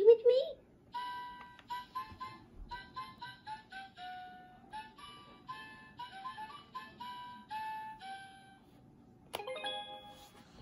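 Fisher-Price Laugh & Learn musical toy teapot playing a simple electronic tune through its small speaker, one clear note at a time stepping up and down. The tune stops shortly before the end, and a new chime starts just after.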